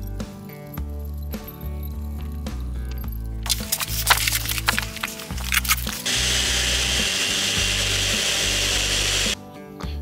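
Background music throughout. A socket ratchet gives a run of sharp clicks from about a third of the way in. About six seconds in, a variable-speed rotary sander runs steadily, honing the concrete bench top, and stops shortly before the end.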